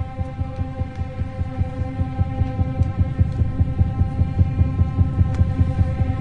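Drama underscore: a steady held droning chord over a fast, even low pulsing throb, swelling in loudness over the first couple of seconds.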